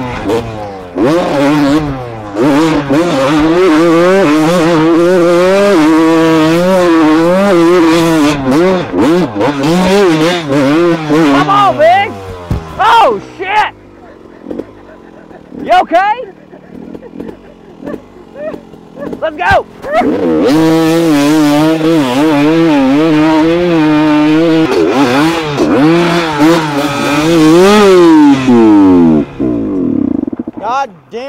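Dirt bike engine revving as it is ridden, its pitch rising and falling with the throttle. It drops away for several seconds in the middle, broken by a few short revs, then runs steadily again.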